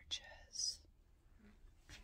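A woman whispering a few words in the first second, then quiet, with a single sharp click near the end.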